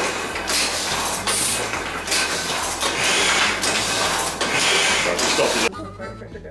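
Heidelberg windmill platen letterpress running, a loud rhythmic mechanical clatter about once a second as it cycles. It stops abruptly near the end.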